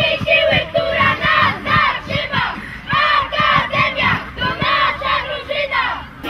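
A team of young boys huddled arm in arm, shouting a rhythmic team chant in unison: a quick, even run of loud shouted syllables.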